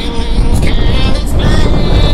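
Loud rushing noise and rumble of a moving passenger train, picked up from outside the carriage window, mixed with background music.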